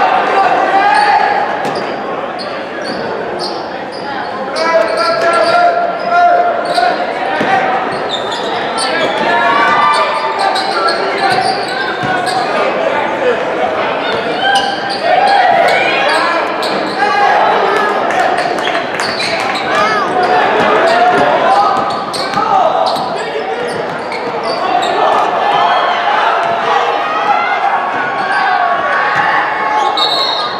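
A basketball being dribbled and bounced on a hardwood gym floor during game play, under continuous shouting and chatter from spectators and players in a large, echoing gym.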